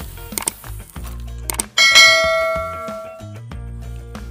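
Background music with a couple of short clicks, then a bright bell-like ding a little under two seconds in that rings out and fades over about a second and a half: the click-and-notification-bell sound effect of an animated subscribe-button overlay.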